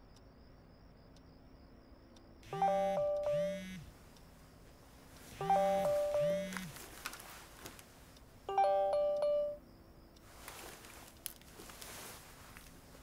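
A mobile phone's ringtone chime sounding three times, about three seconds apart, each ring a short phrase of a few clear notes. Under the first two rings there is a low buzz. Faint handling noise follows near the end.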